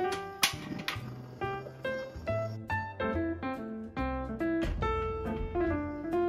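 Instrumental background music led by piano and plucked guitar over a steady bass line. A single sharp click sounds about half a second in.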